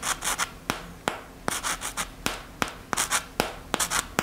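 A macaron's crisp shell crackling as it is squeezed and rubbed between the fingers: a rapid, irregular run of sharp crackles.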